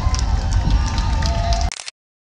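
Low, continuous rumble of Space Shuttle Atlantis's solid rocket boosters and main engines heard from miles away, with people's voices over it. The sound cuts out abruptly near the end.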